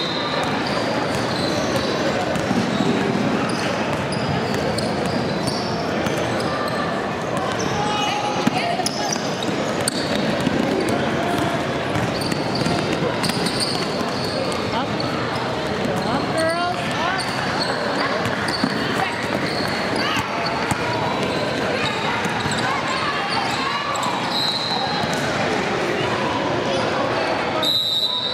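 Sound of a youth basketball game in a gym: a basketball bouncing on the hardwood court amid indistinct voices of players and spectators echoing in the large hall.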